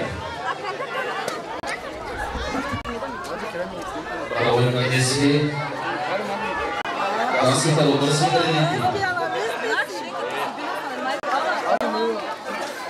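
Several people talking at once in a party crowd, with one voice standing out louder twice, about four and about eight seconds in.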